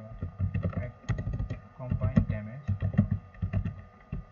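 Typing on a computer keyboard: an irregular run of quick keystrokes as a word is entered.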